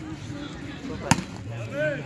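A volleyball struck once with a sharp smack about a second in, likely a hand hitting the ball at the start of a rally.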